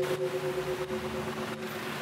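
Dense motor-scooter traffic: many small scooter engines running past together in a steady wash of engine and tyre noise.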